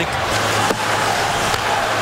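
Hockey arena crowd noise: a steady wash of crowd sound with a low steady hum under it, and a single short knock less than a second in.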